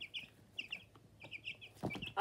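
Young chicks peeping: short high chirps in quick little runs, with a single soft knock near the end.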